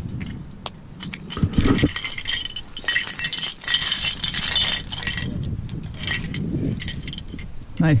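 Metal climbing gear, carabiners and cams on a trad rack, jingling and clinking for about two seconds in the middle, with a low handling thump shortly before.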